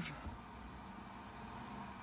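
Quiet, steady background hiss: the room tone inside a parked car with the engine off.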